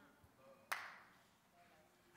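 Near silence in a large room, broken once about two-thirds of a second in by a single sharp tap that echoes briefly.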